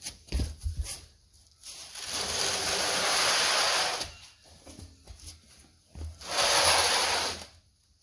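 A 4-speed automatic transmission sitting on a sheet of old cupboard board, dragged across a concrete floor: a few knocks in the first second, then two long scrapes of the board sliding, one of about two and a half seconds and a shorter one near the end.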